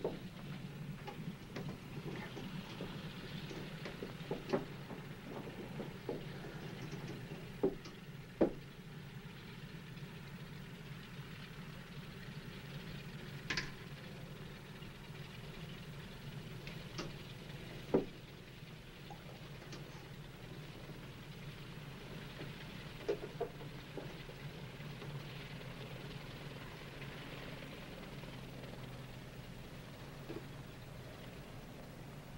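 Steady low hum with scattered light clicks and knocks at irregular intervals, from small cockpit items such as the microphone being picked up and handled.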